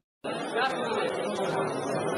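Crowd chatter: many people talking at once, a steady babble of overlapping, indistinct voices that starts a moment in after a brief dead gap.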